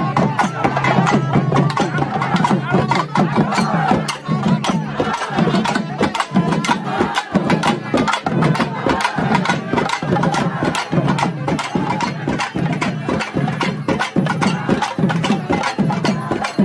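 Festival drumming: sharp drum strikes in a fast, unbroken rhythm, with a crowd of voices shouting over it.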